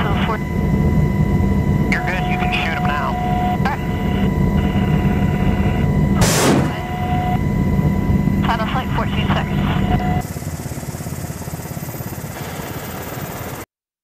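Steady low drone of helicopter cabin noise with crew voices over the intercom. About six seconds in comes a single short, loud rushing burst as a Hellfire missile fires from the launcher rail. Near the end the drone gives way to a quieter, even hiss.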